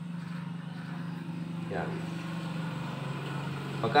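A steady low engine drone, swelling slightly and easing off toward the end.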